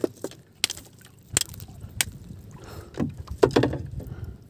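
Handling noises on a small outrigger fishing boat: a few sharp clicks and knocks, then a louder rustling burst about three seconds in, as a caught needlefish and a flying-fish bait are handled.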